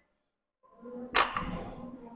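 A sudden sharp, breathy rush about a second in, over a held low strained sound: a lifter's forceful exhale during a barbell row rep.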